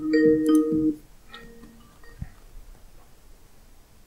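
Skype incoming-call ringtone playing a short melodic phrase. It cuts off about a second in when the call is answered, leaving faint room noise with a single light tick.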